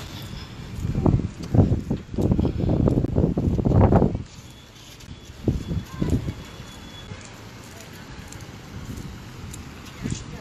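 Wind buffeting a phone's microphone in loud, irregular gusts for about four seconds, then easing to a low steady rumble with a couple of short gusts.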